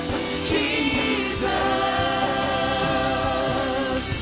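Live gospel worship song: several singers with band accompaniment, the voices holding one long note through the second half.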